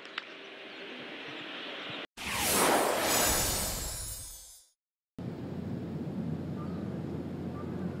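Broadcast transition whoosh: a burst of rushing noise about two seconds in that swells quickly, fades out over about two seconds, and ends in a moment of dead silence. Steady background ambience of the course before and after it.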